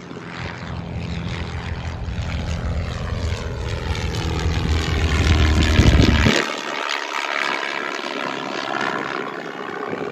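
Small propeller airplane climbing out and flying overhead, its engine and propeller note sliding down in pitch as it passes. Loudest about six seconds in, then fading as it moves away.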